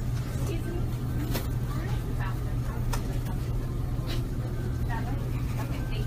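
Supermarket ambience: a steady low hum, such as refrigerated display cases make, with faint indistinct voices.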